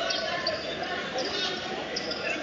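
Basketball bouncing on a gym court amid the steady chatter and shouts of a crowd, echoing in a large hall.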